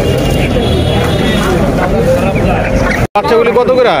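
Crowd chatter in a busy open-air market, several voices talking at once over a low steady rumble. The sound drops out for a moment about three seconds in.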